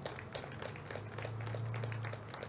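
Scattered light clapping from a few people, irregular sharp claps several times a second, over a steady low hum.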